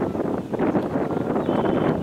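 Wind buffeting the camera microphone, a steady rough noise.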